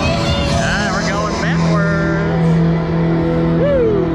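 Loud fairground ride music with long held notes, mixed with riders' voices and shouts over the running ride.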